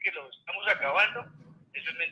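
Speech heard through a mobile phone's speaker: a caller talking on the line, with the thin, narrow sound of a phone call.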